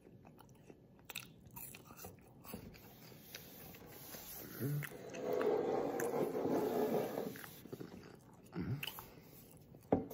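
Close-up chewing and crunching of a Kit Kat wafer bar, with small crunchy clicks and a louder stretch of chewing about halfway through.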